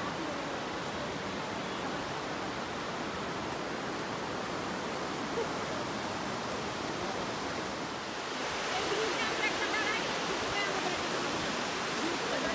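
Steady rush of river water tumbling through a rocky gorge below a waterfall, a little louder from about eight seconds in.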